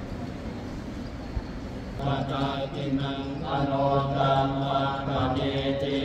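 Buddhist chanting on a low, steady, drawn-out pitch, starting suddenly about two seconds in over a murmuring hall background.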